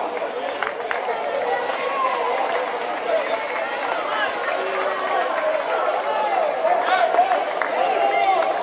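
Many overlapping voices of players and spectators calling and shouting around a football pitch, steady throughout and too far off to make out words.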